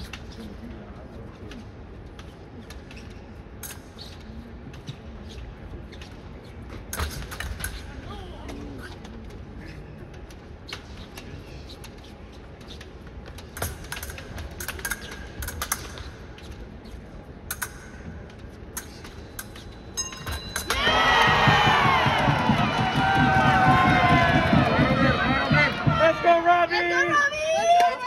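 Épée bout on the strip: the hall stays low and even, with scattered sharp clicks and clinks of blades and footwork. About twenty seconds in, a steady electronic tone from the scoring machine marks a touch. At once spectators break into loud cheering and shouting, which continues to the end.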